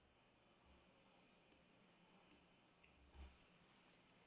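Near silence: room tone with a few faint, short clicks scattered through it and a soft low bump near the end.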